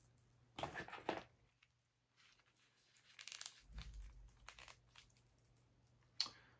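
Faint rustling and crinkling handling noises as a fashion doll and its clothes are handled: two short scrapes about a second in, softer rustles later, with a low bump near the middle.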